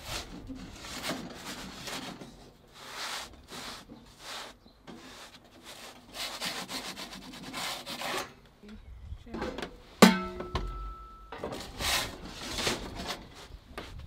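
Wooden pizza peel scraping in repeated strokes across the baking stone inside an Ooni 3 pizza oven as the pizza is worked around. About ten seconds in, a sharp metallic knock rings on briefly, the peel striking the oven's steel body.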